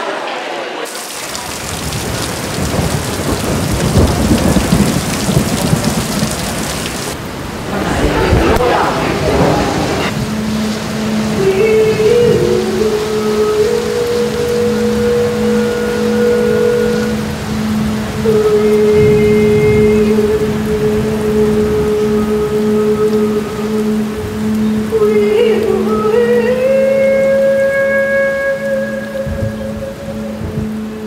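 Sound of rain with low thunder-like rumbles for about ten seconds, then a singing bowl rubbed to a steady, pulsing hum. Above the hum, a woman's voice holds long wordless notes, stepping from one pitch to the next.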